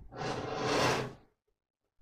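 A brief rustling whoosh lasting about a second, then the sound cuts out to dead silence.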